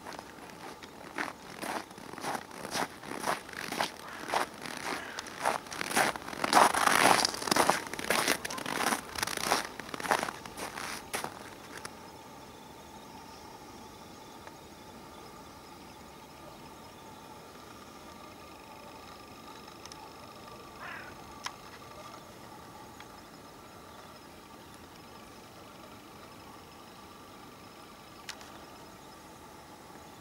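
Footsteps crunching in packed snow close to the microphone, about two steps a second, for roughly the first eleven seconds; after that only a faint steady outdoor background with a couple of light clicks.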